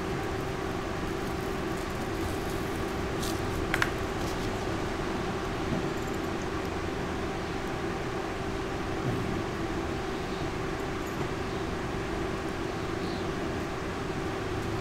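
Steady room hum with a constant low tone, with a couple of faint clicks about three to four seconds in.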